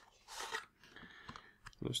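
A Bicycle Genesis deck of playing cards sliding out of its cardboard tuck box: a brief papery scrape about half a second in, followed by a few faint light clicks of handling as the deck and box are set down.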